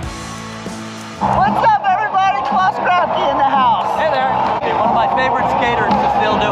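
Music plays for about a second, then it suddenly gives way to louder voices talking close by over crowd chatter.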